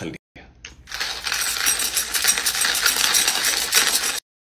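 Manual hand-crank coffee grinder turned briskly, giving a continuous crunching rattle that starts about a second in.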